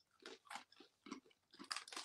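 Quiet, irregular crunching of hard deep-fried corn snacks being chewed, about seven short crunches in a row.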